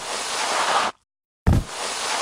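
Two crashing-wave sound effects. The first surge of surf cuts off abruptly just under a second in. About one and a half seconds in, a second one starts with a low thud and swells again.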